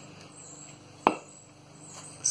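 A single sharp knock with a brief ring about a second in, over a low steady hum.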